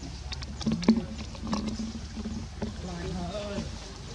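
Indistinct human voices talking, with a few sharp clicks; the loudest click comes just under a second in.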